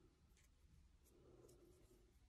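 Near silence, with the faint rubbing and ticking of a crochet hook drawing cotton yarn through a magic circle.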